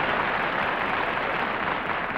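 Studio audience applauding: dense, steady clapping.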